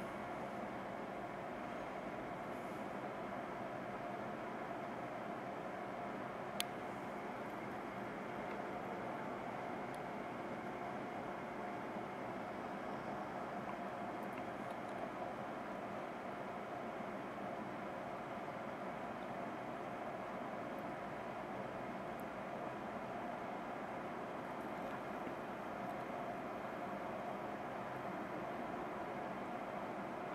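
Toaster reflow oven running steadily with an even whirring hiss as it heats up toward its soak temperature, with a single sharp click about six and a half seconds in.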